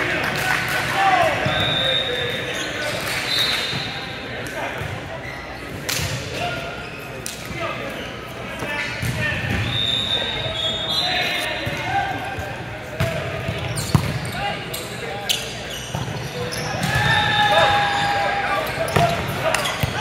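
Indoor volleyball play in a gym hall: players calling out and chattering, short high squeaks of sneakers on the court floor, and sharp smacks of the ball being hit, echoing in the large hall. The sharpest smack comes about 14 seconds in.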